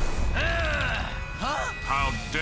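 Cartoon sci-fi sound effects of a crackling energy portal and arriving robots: mechanical whirring and clicking with several sweeping electronic tones that rise and fall.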